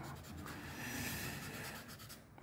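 Felt-tip whiteboard marker (BIC Velleda) scribbling back and forth on paper while shading in a drawing: a soft, steady scratching that fades out near the end.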